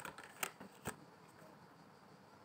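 A deck of divination cards shuffled by hand, overhand style: three short, crisp card slaps in the first second.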